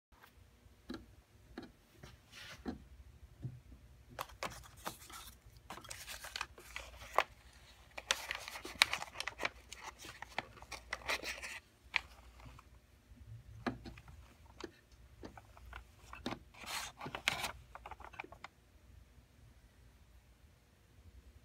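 Paper crinkling and rustling with scattered sharp clicks and knocks as a QRS paper piano roll in its paper wrapper is handled at a player piano's spool box. The rustling comes in irregular spells, thickest from about eight to eleven seconds in and again around seventeen seconds.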